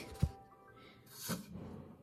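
Faint background music, with a single short, low thump about a quarter of a second in as the metal baking tray is handled, and a brief soft noise a little past the middle.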